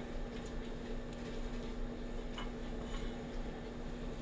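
A metal spoon clicking faintly and irregularly against a roasting pan as pan juices are spooned over sliced pork, over a steady low hum.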